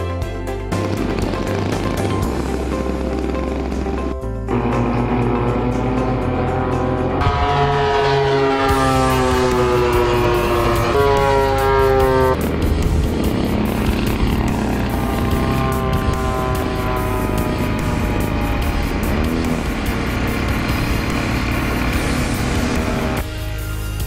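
Background music with a steady bass beat, mixed with the engines of large radio-controlled warbird models flying past; from about seven seconds in, an engine note slides down in pitch as a model passes, and it breaks off about halfway through.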